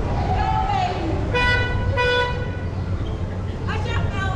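A horn tooting twice, two short steady notes of about half a second each, in quick succession over nearby voices.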